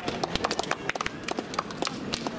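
Scattered clapping from a small audience: a quick, irregular run of sharp claps.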